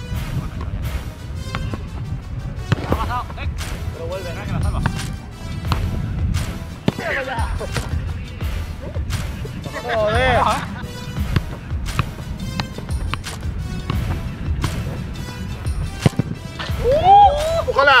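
Background music with a steady beat, with a few short vocal sounds over it.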